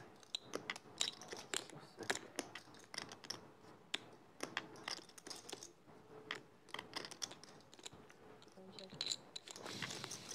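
Poker chips clicking as players handle their stacks at the table: a scatter of quick, light clicks at an uneven pace.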